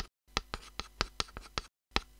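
Chalk writing on a blackboard: a quick run of short sharp strokes, about four or five a second, broken twice by a moment of complete silence.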